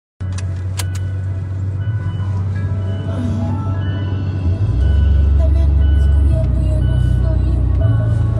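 Steady low rumble of a moving car heard from inside the cabin, stepping louder about halfway through, with faint music underneath.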